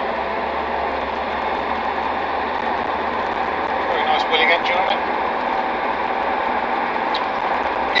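Land Rover Defender 90 TD5's five-cylinder turbodiesel engine and road noise inside the cab while driving, a steady, even drone. The engine is running without misfiring or hesitancy.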